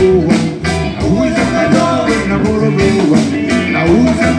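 Live band playing a song with a steady beat: electric guitar, keyboards and drums, with a male voice singing.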